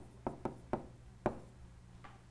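A stylus tapping on a touchscreen as letters are handwritten: about five short, sharp taps, irregularly spaced, in the first second and a half, the loudest a little over a second in.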